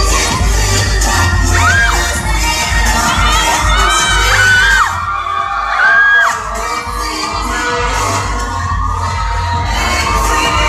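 A crowd shouting and cheering over loud music with a steady bass beat, with several high, held screams about 2, 4 and 6 seconds in.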